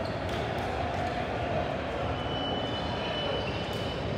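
Steady background rumble of a large gymnasium, with a few sharp knocks like a basketball bouncing on the wooden floor. A thin high steady tone runs through roughly the last two seconds.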